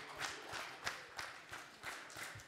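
Scattered applause from a handful of people in an audience: uneven, separate hand claps rather than a full ovation.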